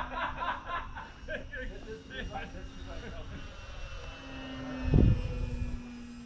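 Electric motor and propeller of a distant E-flite Pitts S-1S 850mm RC biplane giving a steady hum that dips briefly and comes back. Voices chatter and laugh over it for the first couple of seconds, and a brief loud low thump hits the microphone about five seconds in.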